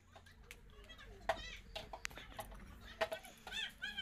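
Faint voices in the background with short high-pitched calls, most of them near the end, and a few light clicks in between.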